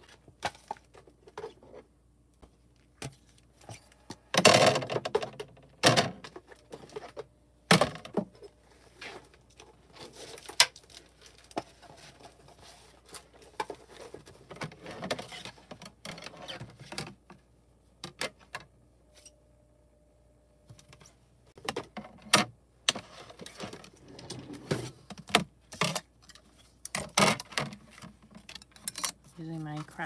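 Craft supplies being rummaged through and handled: irregular knocks, clacks and rustling, with hard plastic cutting plates knocking together as they are found and moved.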